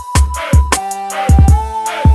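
Hip-hop instrumental beat: deep kick drums and sharp snare hits under a held, whistle-like synth tone that steps down in pitch about a second in.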